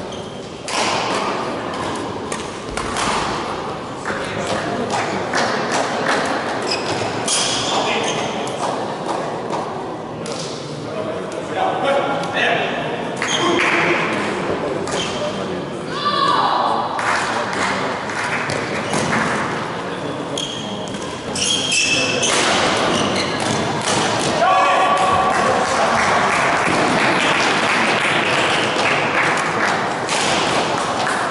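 Badminton rallies: repeated sharp racket strikes on a shuttlecock and thuds of play, with players' voices, echoing in a large sports hall.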